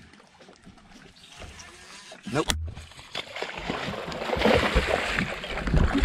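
A hooked bass splashing and thrashing at the water's surface beside the boat as it is brought in to be landed, the splashing building over the last couple of seconds.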